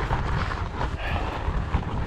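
Strong headwind buffeting the microphone, with a Surly Ice Cream Truck fat bike's tyres rolling and crunching over loose rock on a steep climb.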